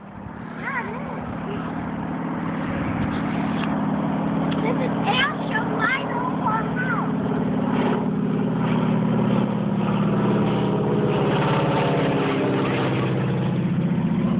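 The low, steady drone of a T-6 Texan's radial engine and propeller as the plane comes in low to land. It grows gradually louder over the first several seconds and stays near its loudest through the second half.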